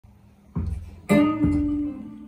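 Opening of a blues song played back through KEF Reference 205 floorstanding speakers and heard in the room: three plucked guitar notes, the loudest about a second in, the last one left ringing.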